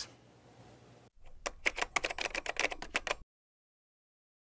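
Typewriter-style clicking, a quick run of about a dozen and a half keystrokes in under two seconds, starting about a second in and cutting off abruptly.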